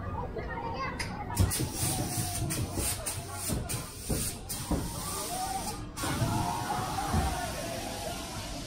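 Distant voices and children's calls, with a pulsing hiss from about one second in that cuts off suddenly about six seconds in.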